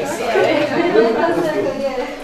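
Several people talking at once, overlapping voices with no single clear speaker.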